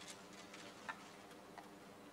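Faint, irregular clicks and ticks over a near-silent room, about half a dozen in two seconds, one a little louder near the middle.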